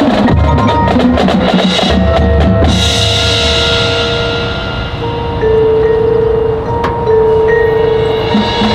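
Marching band playing, led by its percussion: a dense run of rapid drum and mallet strikes with low bass drum hits, then about three seconds in the band moves to held, sustained notes, with a single sharp strike near the end.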